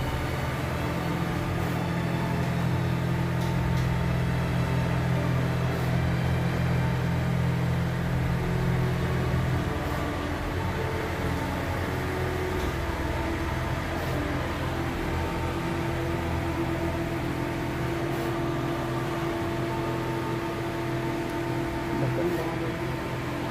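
Skyjet 512 large-format flex printer running while it prints, a steady machine hum from its carriage and the fans under the media. Background music fades out about halfway through.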